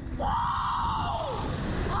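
A young man's long scream of "whoa", rising and then falling in pitch, as the Slingshot ride catapults him upward; another yell starts near the end.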